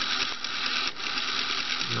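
The robot's two small DC motors running steadily with an even whir.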